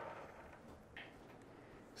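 Near silence: room tone, with one faint, brief rustle about a second in.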